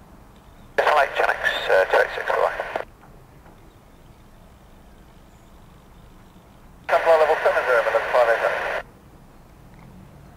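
Two short air-traffic-control radio transmissions, each a clipped voice heard through a narrow radio band and lasting about two seconds, the first about a second in and the second near the end. A faint steady hiss lies between them.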